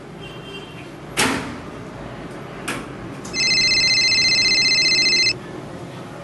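A sharp clack about a second in, like a sliding window being pushed shut, and a lighter knock a little later. Then a phone rings with a steady, high, fluttering electronic tone for about two seconds and stops.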